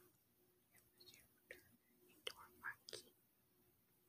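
Near silence, broken by a few faint, scattered clicks and short soft mouth-like noises.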